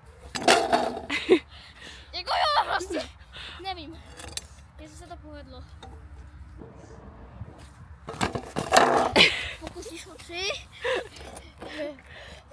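Short bursts of voices calling out, with a louder burst of noisy clatter and shouting about nine seconds in, over a steady low rumble.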